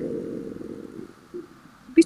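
A low rumble with no clear pitch, dying away about a second in.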